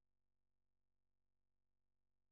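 Near silence: the soundtrack is essentially empty.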